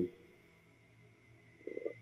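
A voice trailing off at the very start, then a pause of near silence in a small room, broken near the end by a brief faint sound just before the voice comes back.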